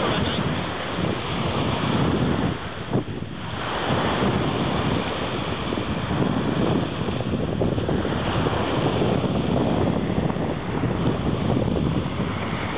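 Wind buffeting the camera microphone over the wash of waves on a beach: a steady, rushing noise that briefly drops about three seconds in.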